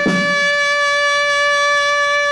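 Brass music with drums: one long held brass note, with a drum beat as it begins.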